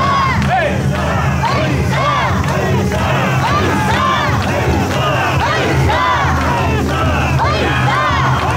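Mikoshi bearers chanting "wasshoi" together as they carry the shrine, a loud rhythmic group shout repeated about twice a second over a low crowd rumble.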